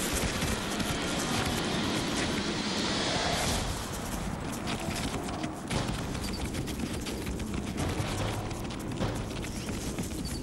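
Two bull American bison fighting in the rut: a dense run of thuds from hooves pounding the ground and heads and bodies colliding, over a steady rumble of scuffling.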